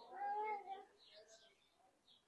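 A brief pitched vocal sound, under a second long near the start, that rises slightly and falls.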